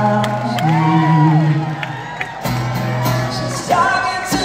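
Live solo acoustic guitar strummed under a male lead vocal, with whoops and cheers from the crowd.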